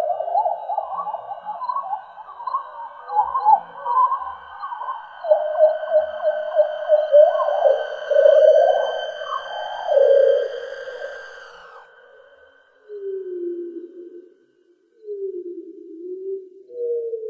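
Electronically manipulated scream in a contemporary chamber opera, quivering and warbling in pitch over steady high held tones. It fades out about twelve seconds in and gives way to lower, sliding whale-like tones.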